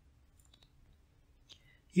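Near silence in a pause between narrated sentences, broken by a faint short click about one and a half seconds in, just before the narrator's voice resumes at the very end.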